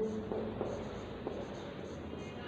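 Dry-erase marker writing on a whiteboard: faint scratching strokes as a word is written out.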